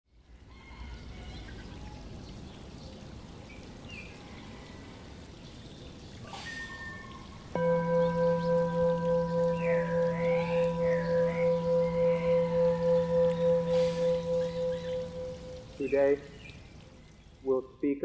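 A singing bowl is struck about seven and a half seconds in and rings with one steady tone and a slow, even pulsing beat, fading away over about eight seconds. Before it there is only faint background noise with a few short chirps, and a man's voice starts near the end.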